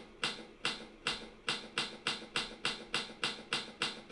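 Recorded typewriter keystrokes used as a sound effect: sharp clacks struck at an even pace of about four a second.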